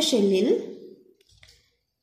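A voice speaking briefly, its pitch gliding, ending about half a second in; then faint pen-on-paper sounds as a diagram is drawn.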